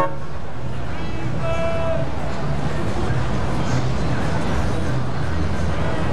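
A car horn gives a short toot about a second in, over the steady low rumble of slow street traffic.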